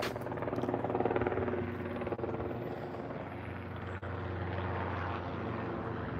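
A steady engine drone with an even, pulsing hum, a little louder in the first second and a half, then holding level.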